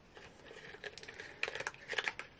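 Faint, scattered light clicks and rustles of small makeup items being handled, with a few sharper clicks near the end.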